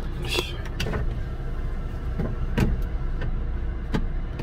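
Steady low hum inside a car cabin, with a few short knocks and rustles as the handheld camera is jostled about.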